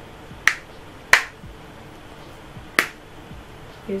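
Three sharp clicks from a shampoo bottle and its cap being handled, at about half a second, a second, and nearly three seconds in.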